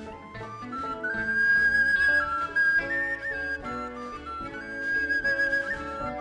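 Native American-style wooden flute playing a slow melody of long held notes, climbing in the first second, over a soft sustained instrumental accompaniment.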